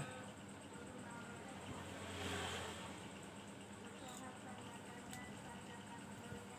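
Faint handling sounds of enamelled copper winding wire and a plastic-insulated stator core being handled: a soft rustle about two seconds in and a couple of light clicks later on, over a low steady hum.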